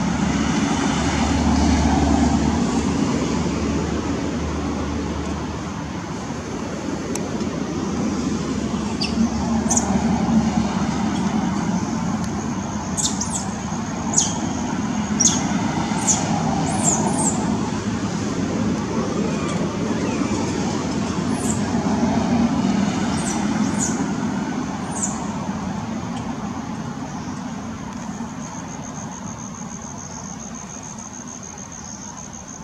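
A steady outdoor background rumble that swells and fades, much like distant road traffic. Through the middle it is broken by a run of short, very high chirps, each falling quickly in pitch.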